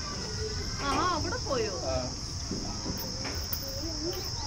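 Steady high-pitched chorus of insects outdoors, with voices talking briefly about a second in.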